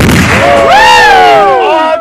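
The boom of an M777 155 mm towed howitzer firing right at the start, dying away within about half a second, followed by several soldiers whooping and yelling loudly over each other.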